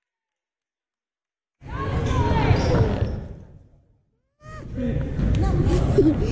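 Basketball gym ambience: echoing crowd voices and court noise. The sound starts abruptly about one and a half seconds in, fades out to silence around the middle, then cuts back in.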